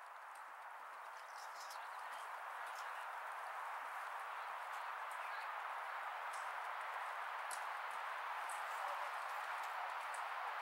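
A horse cantering on a dirt track, its hoofbeats faint against a steady hiss.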